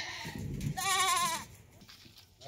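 A Ganjam goat gives one wavering bleat, lasting under a second, starting about three-quarters of a second in.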